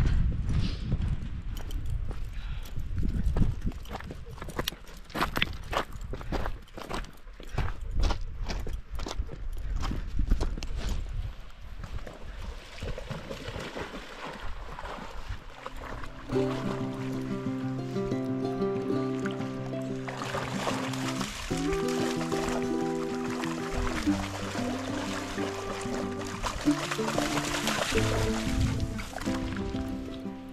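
Low rumbling and scattered knocks, like wind and handling on an outdoor microphone, for the first ten seconds or so; then background music with steady chord changes fades in and carries on, a light beat joining partway through.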